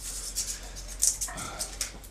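Dry pine cones crackling and rustling in the hands, with a quick irregular string of small clicks from the scales.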